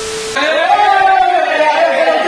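A short burst of TV-static hiss with a steady beep, the sound of a glitch transition effect, cuts off after about a third of a second. Loud, drawn-out voices follow, people exclaiming and laughing.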